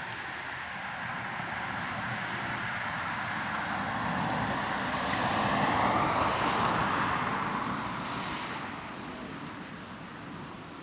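A car passing by: a swell of engine and tyre noise that builds, is loudest about six seconds in, then fades with a falling pitch.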